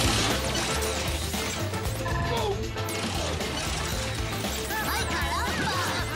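Cartoon slot-machine sound effect: a loud hit, then reels spinning with a rapid ratcheting, mechanical clatter over upbeat music.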